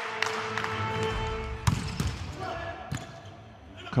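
Volleyball being struck in an indoor arena: a sharp smack of the serve about a second and a half in, then softer ball contacts near three seconds and at the end as the rally begins, over echoing hall ambience.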